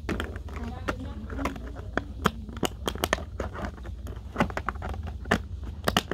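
A vinyl Funko Pop figure being fitted back into its cardboard window box: crinkling of the plastic insert with many short, sharp clicks and taps of vinyl on cardboard and plastic.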